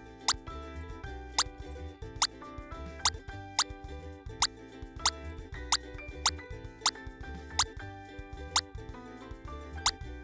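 Upbeat background music: a bouncing bass line under sustained chords, with sharp clicks roughly every half second to a second.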